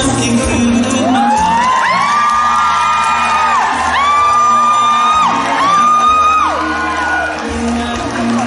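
Pop music over a PA with a steady low backing, while a high voice holds three long notes, each sliding up at its start and dropping away at its end; the crowd cheers.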